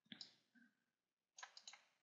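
Faint computer mouse clicks: two near the start, then three in quick succession past the middle, as rows are selected and a right-click menu is opened.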